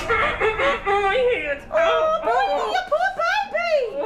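A man's wordless yelling and whining in pain, the pitch swooping up and down, from a hand burned on a hot stove, with some giggling.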